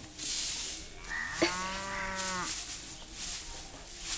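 A stiff broom swishing over dusty ground in repeated strokes, with a cow mooing once, one long low call starting about a second in.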